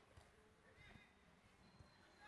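Near silence with faint footsteps on a tiled floor, a few soft steps under a second apart, and faint distant voices.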